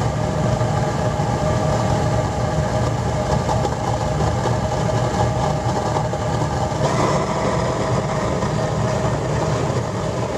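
Horizontal waste oil burner running with a steady, rough rumble that turns brighter and hissier about seven seconds in.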